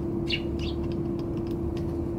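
Eurasian tree sparrows give two short chirps in the first second, with light ticks of beaks pecking grains on a wooden feeder tray, over a steady low background hum.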